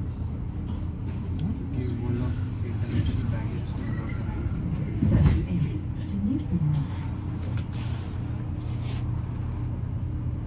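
Inside an Alexander Dennis Enviro400EV battery-electric double-decker bus moving slowly: a steady low hum with road noise, and faint, indistinct passenger voices. A brief louder noise comes about halfway through.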